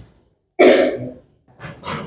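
A person coughs once, sharply, about half a second in.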